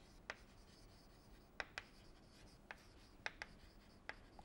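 Chalk writing on a chalkboard: faint, irregular taps and scratches of the chalk stick against the board as words are written, about six sharp clicks in all.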